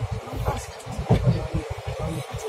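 Uneven low rumble of a moving passenger train, heard from inside the coach.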